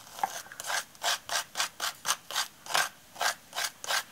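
Palette knife scraping texture paste through a plastic stencil onto a paper journal page: a steady run of short rubbing strokes, about three a second.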